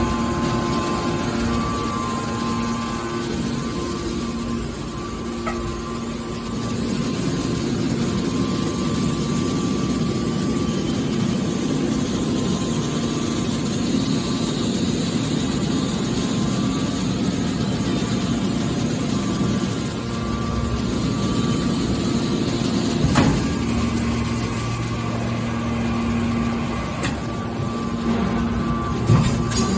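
Hydraulic power unit of a horizontal scrap metal baler running steadily: the electric motor and hydraulic pump hum with a steady whine as the press's hydraulic cylinders work. A single clunk comes near the end, after which a deeper hum joins in.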